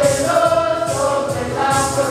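A group of voices singing a gospel song together, with keyboard accompaniment and a regular, high, shaking percussion beat about once a second.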